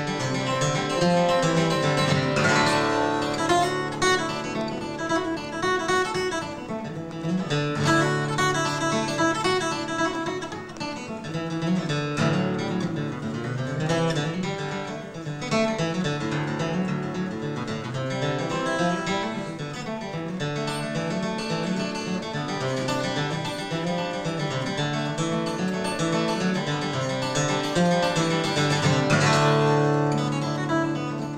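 Solo steel-string acoustic guitar flatpicked, running through a fast fiddle-tune melody, note after note without a break.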